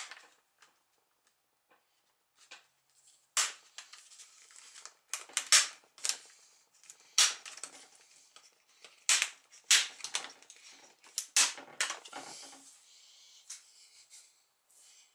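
Plastic latches of an Acer laptop's screen bezel snapping loose one after another as a plastic card is worked along the gap, with sharp clicks and softer scraping of the card against the plastic between them.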